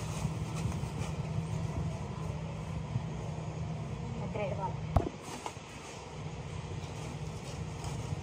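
Loose plastic sheeting rustling as it is pulled over a ceramic toilet, over a steady low hum, with one sharp knock about five seconds in.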